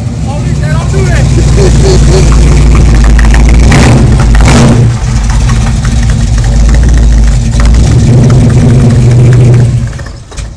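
Pontiac Trans Am's big V8 held at high revs, very loud, with a brief dip about halfway through. The engine drops off sharply just before the end.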